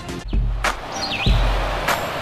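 TV news bumper jingle: electronic music with heavy deep bass hits and a rushing whoosh, over quick swooping high-pitched tones and two sharp clicks.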